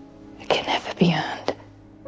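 Soft, near-whispered speech over quiet background music of held notes.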